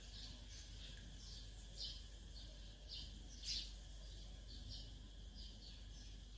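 Faint, scattered short high chirps of small birds over a quiet background.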